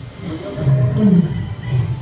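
Leopard calling with its sawing call: a run of low grunting calls, about two a second.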